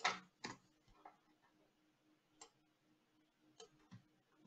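Scattered computer mouse clicks, about six in all and irregularly spaced, the first the loudest, as text is selected and pasted.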